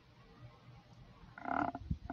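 Faint call-line hiss, then a brief hum-like voiced sound from a person about a second and a half in, followed by a couple of soft clicks.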